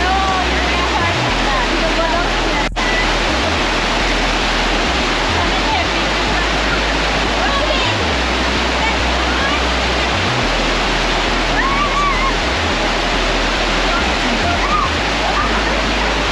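A broad, low rock-slope waterfall with water rushing steadily over it, with voices calling out here and there above the noise.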